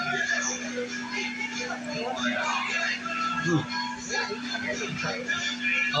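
Background music with a singing voice, under people's talk and a laugh, with a low steady hum beneath it.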